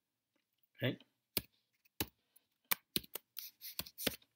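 Computer keyboard keystrokes as code is typed: a handful of sharp separate key clicks, irregularly spaced and closer together near the end.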